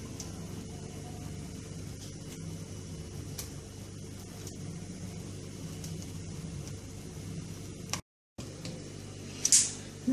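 A steady low background hum with faint soft sounds of plantain slices being worked through thick batter in a steel bowl. The sound cuts out completely for a moment a little after eight seconds, and a brief sharp sound comes near the end.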